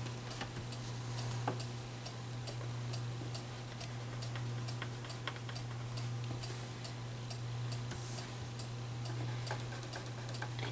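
Colored pencil working on paper over a wooden table: faint, light ticks and scratches at an uneven pace, over a steady low hum.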